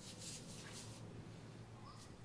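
Faint swishes of a Chinese painting brush sweeping across unsized Xuan rice paper, a few short strokes one after another.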